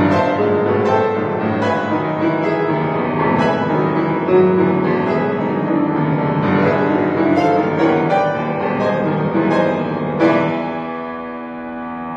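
Solo grand piano playing a tarantella, with quick, dense passages and accented chords. About ten seconds in, a loud chord is struck and left to ring, fading away.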